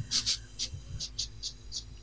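A man imitating a dog with a run of about eight short, quick breaths into a handheld microphone.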